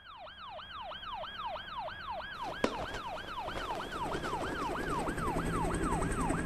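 Police siren on a rapid yelp, about three rise-and-fall wails a second, growing steadily louder. A single sharp click about two and a half seconds in.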